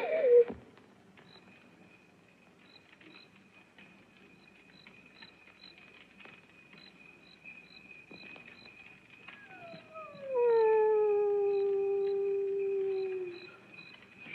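A single canine howl about nine seconds in: it slides down in pitch, then holds steady for some four seconds before stopping.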